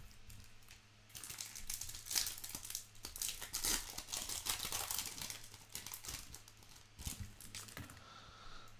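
Foil wrapper of a Topps Chrome baseball card pack being torn open and crinkled by hand, a dense crackling that starts about a second in and dies away near the end.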